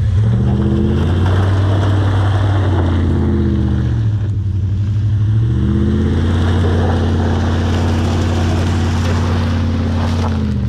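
Lifted 2000 Dodge Ram pickup on 35-inch mud tyres revving hard with its wheels spinning in mud. The engine climbs, eases off about four seconds in, then climbs again about a second later and holds high, over a hiss of spinning tyres.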